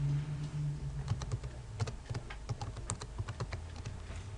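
Typing on a computer keyboard: a quick, irregular run of key clicks as a word is typed, starting about a second in, over a low steady hum in the first second.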